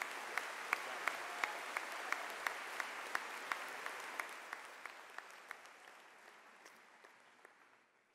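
Audience applause that fades away steadily over several seconds. One nearby clapper's claps stand out at about three a second, then stop after about five seconds.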